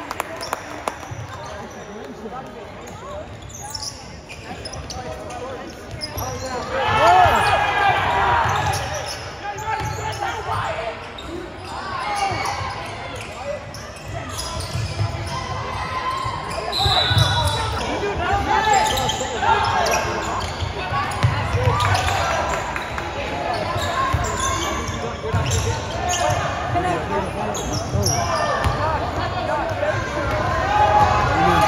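A basketball game in a school gymnasium: the ball bouncing on the hardwood court as players dribble, with spectators' voices and shouts echoing through the hall.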